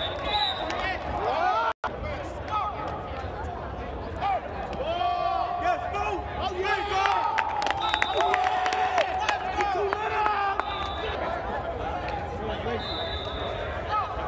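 Several voices of players and onlookers shouting and calling out across an indoor turf field, with some held calls, over scattered sharp knocks. The sound cuts out for an instant just under two seconds in.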